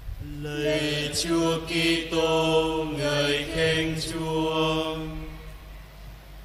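Men's voices chanting a short sung liturgical response in several held notes: the congregation's answer to the chanted close of the Gospel reading at Mass. The chant fades out about half a second before the end.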